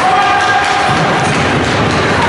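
Spectators' voices and shouting in an ice rink during a youth hockey game, with a held shout in the first second, over scattered knocks of sticks and puck from the play on the ice.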